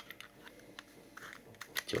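A plastic guitar pick being pushed into the rubber-padded slot of a Dunlop Pickholder: faint scraping and rubbing, with a few small clicks in the second half.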